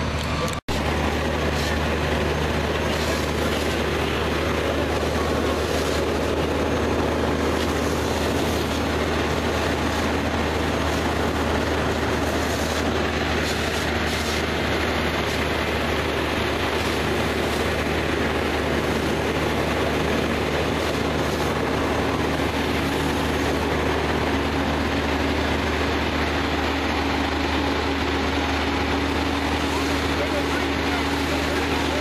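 Fire engine running steadily: a loud, unbroken low hum under a broad roar. The sound cuts out for an instant just under a second in.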